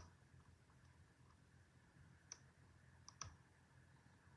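Faint ticks of a hook pick working the serrated pin stacks of an American Series 10 padlock under tension: one light click a little past two seconds in and a quick pair just after three seconds, otherwise near silence.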